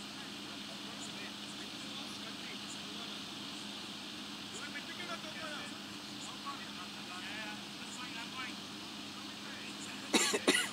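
Faint, indistinct voices of players calling across a cricket field, mostly in the middle seconds, over a steady background hum.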